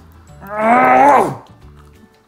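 A man's long, drawn-out "oh" of pleasure, made with his mouth full of bread and Nutella, its pitch falling away at the end. Background music plays underneath.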